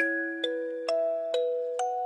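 Music-box background music: a slow melody of single plucked notes, about two a second, each ringing on and fading before the next.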